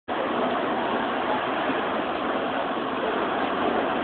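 Heavy rain and wind of a severe thunderstorm, a steady loud rush of downpour, heard from inside a trailer.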